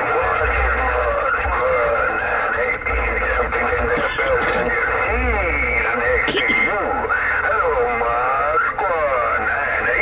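A distant station's voice coming through a Uniden Grant LT CB radio's speaker on 27.025 MHz (channel 6): thin, narrow-band and wavering in pitch over static, never clear enough to make out the words.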